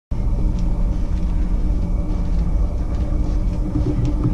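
Steady low rumble with a faint hum, the background noise aboard a cruise ship, cutting in abruptly at the start.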